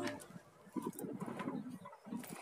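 A dove cooing faintly in a few low notes.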